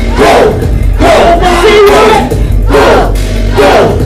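Live hip-hop performance through a club PA: a loud beat with shouted vocals and crowd voices over it.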